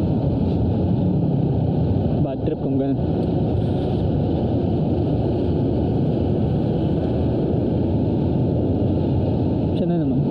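Yamaha YTX 125 single-cylinder four-stroke motorcycle engine running steadily at road speed, mixed with the rush of riding wind. The sound dips briefly a little past two seconds in, then carries on steadily.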